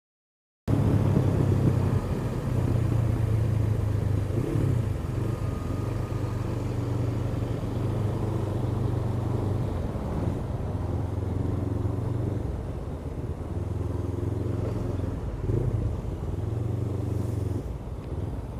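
Honda CBF500 motorcycle's parallel-twin engine running at low speed in traffic, with road and wind noise; the sound starts under a second in. The engine note eases off and picks up again several times as the throttle is closed and reopened.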